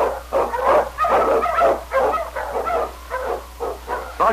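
Dogs barking: the sled-dog team sound effect of an old-time radio drama. A steady low hum from the old recording runs beneath.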